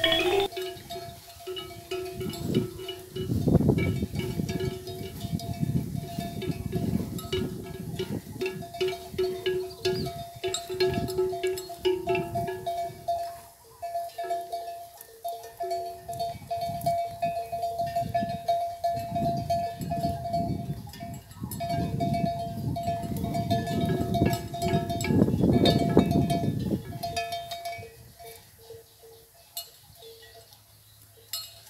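Bells hung on the necks of grazing water buffalo clanking and ringing irregularly, over loud, uneven low rumbling.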